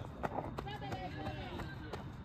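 Voices of players calling out across a baseball field, with a couple of sharp clicks about a quarter of a second in.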